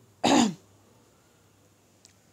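A woman clears her throat once with a short cough about a quarter second in; the rest is quiet room tone.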